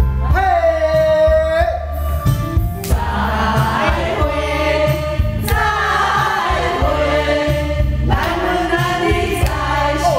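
A group singing along to a karaoke backing track with a heavy bass line: one voice holds a long note near the start, then many voices sing together.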